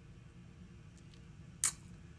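Quiet room tone with a low steady hum, broken by one short, sharp click about a second and a half in.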